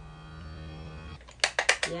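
A quick run of about four sharp plastic clicks, about a second and a half in, as AA batteries are pressed into the battery compartment of a tracking phone stand, over faint background music with held notes.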